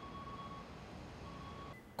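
Two faint electronic beeps on a single steady tone, each about half a second long and about a second and a quarter apart, like a vehicle's reversing alarm, over a steady low street hum.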